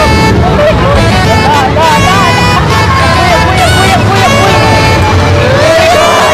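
Riders on a spinning chain swing ride yelling, shrieking and laughing without words, with a rising scream near the end. A steady low rumble of wind on the microphone runs underneath.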